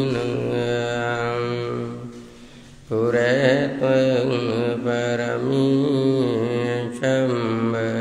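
A man's voice chanting Pali verses in long, drawn-out melodic lines through a microphone, pausing briefly about two seconds in and again near seven seconds.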